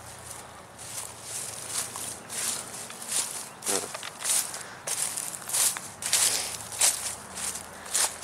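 Footsteps of a person walking over dry leaves and grass, about two steps a second, with some rustling of leaves as the walker brushes through bushes.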